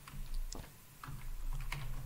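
Computer keyboard keys being tapped: a scattered handful of single keystrokes as a terminal command is typed.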